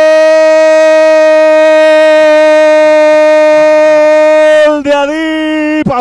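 A football commentator's drawn-out goal cry, "¡Gooool!", held on one long, loud, steady note, breaking off a little before the end into quick shouted words.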